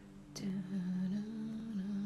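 A woman humming a few notes with her mouth closed, stepping up and down in pitch for about two seconds, over quiet background music.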